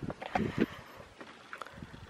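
A few soft knocks in the first half-second or so, then faint, hushed room tone.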